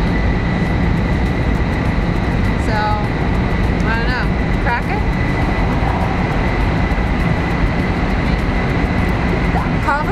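Steady low rumble inside a moving vehicle, with a thin steady whine above it. A few brief snatches of quiet talk come through about three to five seconds in.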